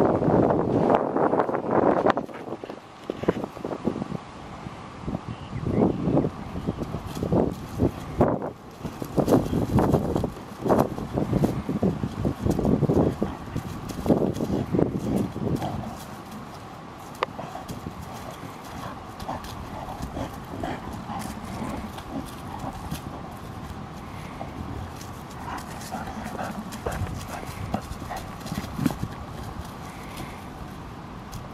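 Two Labrador retrievers, one black and one yellow, wrestling over a rubber ball, with play growls and the scuffle of paws on dry leaves and grass. The sounds come in a quick run of short bursts for about the first half, then die down to scattered quieter ones.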